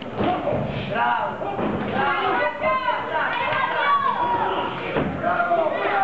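Several voices calling out over one another in a large, echoing hall, with a few sharp thuds mixed in.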